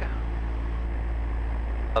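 Cessna 172's four-cylinder piston engine and propeller running steadily at run-up power, about 1,800 RPM, on the right magneto alone during the magneto check. The RPM drop is about 50, within limits, so the right magneto is healthy.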